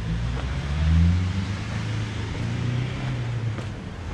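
A car driving past close by on the street, its engine hum loudest about a second in and fading away near the end.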